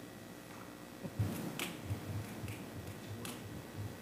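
Quiet room tone with a few faint, sharp clicks, the loudest just after a second in and another near the end.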